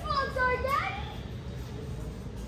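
A young child's voice calls out in high, sliding tones for about the first second, then only a low, steady background rumble remains.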